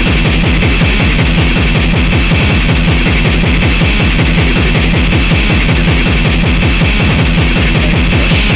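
Loud, harsh, distorted extreme music track: a very fast pounding beat in the low end under a steady high buzzing layer, with no let-up.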